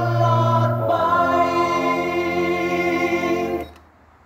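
A song with singing played back through a Victor micro component system's speakers, cutting off abruptly with a click near the end as the unit is switched over to its aux input.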